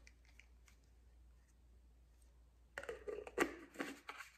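A tumbler's lid being twisted and handled: near silence, then a quick cluster of short scrapes and clicks near the end.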